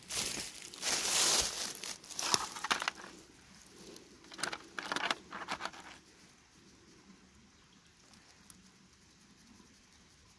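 Irregular rustling and crinkling handling noise close to the microphone, in bursts over the first six seconds, then only faint background.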